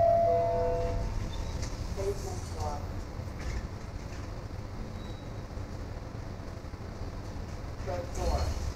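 Elevator chime of held tones right at the start, then the steady low hum of the elevator car running on while its doors slide open.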